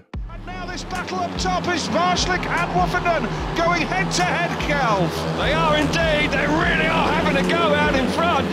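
Speedway motorcycles' single-cylinder 500cc methanol engines racing as a pack. Several engine notes rise and fall together as the bikes drive through the bends, with a steady low drone beneath.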